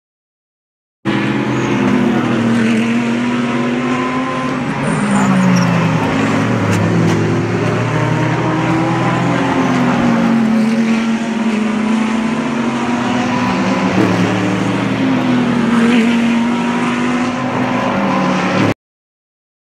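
GT race cars' engines running hard as they pass through a corner, the engine note falling and rising several times as they brake, shift and accelerate away. The sound starts suddenly about a second in.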